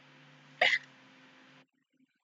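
A woman stifling a laugh behind her hand: one short, hiccup-like burst of breath and voice about half a second in. A faint background hiss and hum cuts off abruptly near the end.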